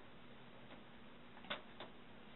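Two short, sharp clicks about a third of a second apart, over a faint steady room hum.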